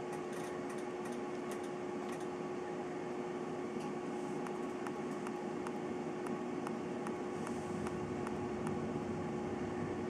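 DC immersion water heater elements heating water in glasses toward a boil: a steady hiss with faint, irregular ticking, several a second, of steam bubbles forming and collapsing on the hot elements, over a steady low hum.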